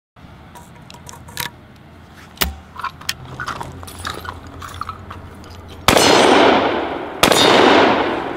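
Metallic clicks of shells going into an L.C. Smith side-by-side 12-gauge shotgun and the action closing. Near the end come two loud shots about a second and a half apart, each echoing as it fades.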